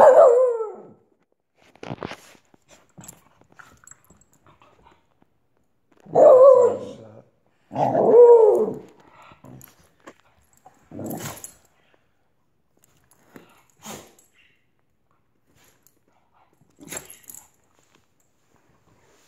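Wheaten terrier vocalising in play: a short falling bark at the start, then two longer, louder barks about six and eight seconds in, with fainter brief sounds between.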